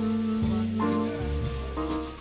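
Live small-group jazz: a tenor saxophone holds a long note for about the first second, then moves to shorter notes, over bass and drums with cymbals.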